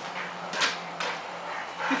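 A dog gives a single short bark about half a second in, followed by a light click about a second in.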